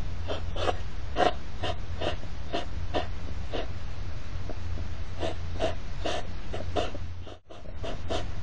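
European hedgehogs huffing and snorting in short, breathy puffs, two to three a second, the sound of a courtship 'carousel'. The puffing pauses briefly about halfway through, then resumes, over a steady low hum.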